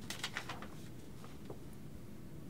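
A sheet of paper rustling as it is picked up off a carpeted floor: a few soft crinkles in the first half-second and a small tick about a second and a half in, over low room hum.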